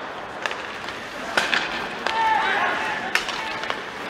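Ice hockey play heard rinkside: skate blades scraping across the ice with several sharp clacks of sticks and puck, and a player's shout about two seconds in.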